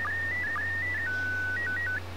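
Slow-scan TV (SSTV) image signal in PD120 mode, played from a WAV file: a single whistle-like tone stepping up and down in pitch, with a short dip to a lower pitch about twice a second that marks the line syncs. About a second in it holds one lower pitch, then hops a few times and cuts off as the file playback ends.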